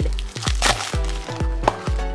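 Background music with a steady beat. About half a second in there is a short rustle of plastic as a Play-Doh can is opened.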